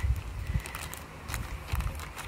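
A few faint crinkles and clicks of a clear plastic bag being pressed and handled, over a low wind rumble on the microphone.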